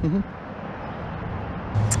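A brief laugh, then steady outdoor background noise beside a flowing river: an even rushing hiss with no distinct events. A low steady hum joins near the end.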